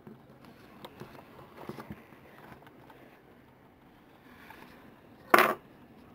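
Faint small clicks and scrapes of fingernails touching and rubbing as a wet water decal is pressed and smoothed onto a nail. One short loud rush of noise comes about five seconds in.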